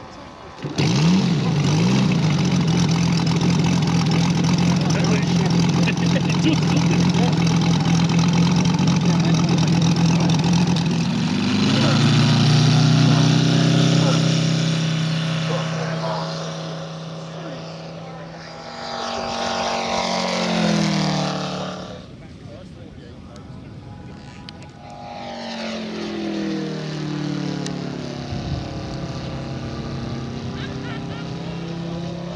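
Engine of a large-scale radio-controlled T-6 Texan model catching after the propeller is hand-flicked, then running at a steady idle. About eleven seconds in it is opened up and the pitch rises for the take-off run. It then passes overhead with the pitch falling away, fades, and comes round again near the end.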